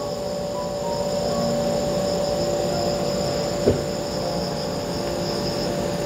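Steady, high-pitched trilling of insects, with faint low steady tones beneath and a single soft click a little past the middle.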